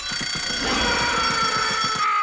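Cartoon twin-bell alarm clock ringing, its hammer rattling rapidly against the bells in a steady, loud ring.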